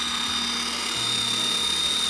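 An electric mini chopper's motor running steadily as its blade minces raw chicken breast in a plastic bowl, with a high whine over a low hum that shifts slightly in pitch about a second in.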